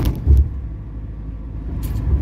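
A car driving, heard from inside the cabin: a steady low rumble of engine and road, with a brief low thump about a third of a second in.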